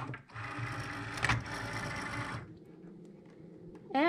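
Cricut Maker loading its cutting mat: the feed motor whirs for about two seconds with a click partway through, then drops to a quiet hum.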